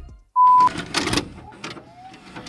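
A short, loud electronic beep lasting about a third of a second, followed by clicking and whirring from a VCR's tape mechanism as it starts playing a tape.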